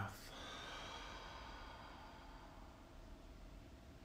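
A man breathing out slowly through his mouth: one long, deep exhale that fades away over about two and a half seconds.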